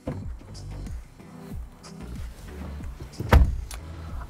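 Background music with a low, repeatedly sliding bass line, and about three seconds in a 2017 Subaru Forester's driver door shutting with a single loud thump as the driver gets in.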